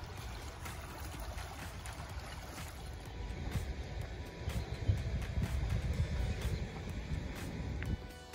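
Water rushing through the Rodman Dam spillway, a steady rush that grows louder about halfway through, with wind noise on the microphone and faint background music underneath.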